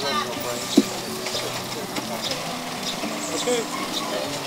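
Quiet, indistinct voices over a steady low hum, with one sharp knock a little under a second in.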